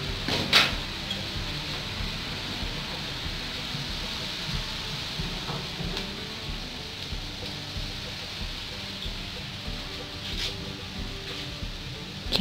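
A wok of pork and ginger sizzling steadily while rice wine is poured in, with a couple of short knocks near the start and again near the end.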